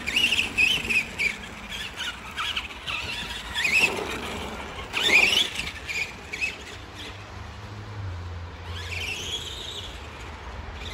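Arrma Granite 4x4 RC monster truck's electric motor and drivetrain whining at speed, the pitch rising and falling with the throttle. The loudest throttle bursts come about four and five seconds in, and it is quieter after about six seconds as the truck moves off.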